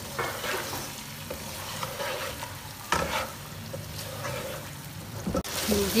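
Boiled chicken pieces sizzling as they fry in a spiced yogurt masala in a nonstick pan, stirred and turned with a wooden spatula, with a few light knocks of the spatula against the pan. The sound breaks off abruptly about five and a half seconds in.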